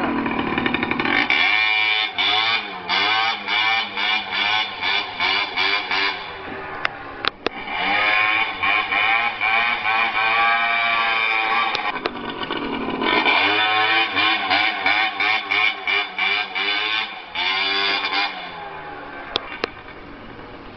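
Tuned Aprilia SR 50 scooter's small two-stroke engine revving hard, the throttle snapped on and off in rapid pulses, about three a second, in two long stretches. In between, the revs rise and fall once in a long sweep; the engine is quieter near the end.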